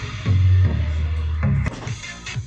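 Eltronic Dance Box 500 (20-08) portable party speaker with two 12-inch drivers playing electronic dance music with a clean sound. A deep held bass note runs through most of the first second and a half, then the music drops quieter near the end.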